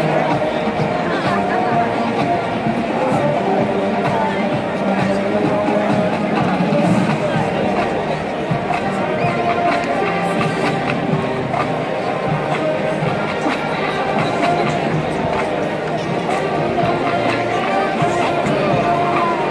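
Marching band playing on a stadium field, heard from the crowded stands with crowd noise underneath: a medley of pop songs all built on the same four chords (I–V–vi–IV), steady and sustained throughout.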